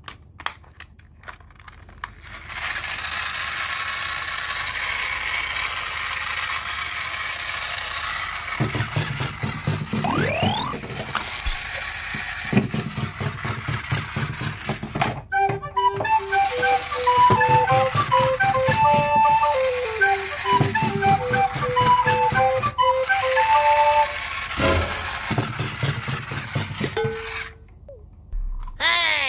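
Battery-powered toy Thomas train with gear-shaped plastic wheels running: its motor whirs steadily and the wheels clatter rapidly on the table, and about halfway through it starts playing a simple electronic beeping tune. The sound cuts off near the end.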